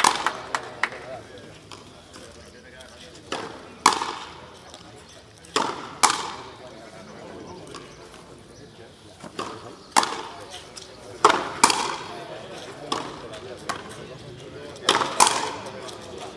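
Frontenis rally: a rubber ball struck by rackets and smacking off the frontón wall and floor. Sharp cracks come every one to four seconds, some in quick pairs, each with a short echo.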